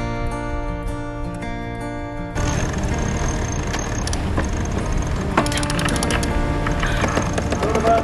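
Acoustic guitar background music for the first couple of seconds, then wind and sea noise on the deck of a sailing catamaran. From about five and a half seconds in there are runs of rapid clicking from a sheet winch being wound.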